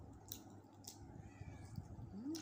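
Faint close-up chewing of crispy roast chicken: soft wet mouth sounds with a couple of sharp crunchy clicks, about a third of a second and about a second in.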